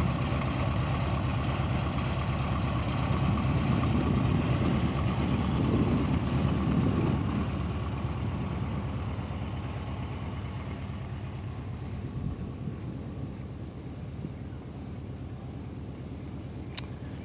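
1995 Mexican Volkswagen Beetle's air-cooled flat-four engine idling steadily, still cold shortly after a cold start. The engine sound grows gradually fainter over the second half.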